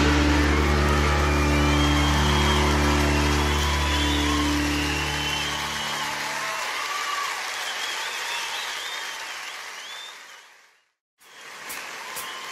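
A live band's final chord ringing out over audience applause and cheering. The chord stops about halfway through, and the applause fades away to silence shortly before the next track begins.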